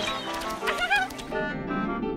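Cartoon background music, with a short high squeaky cartoon voice wavering in pitch a little before halfway. A rougher, noisier sound joins the music about two-thirds of the way through.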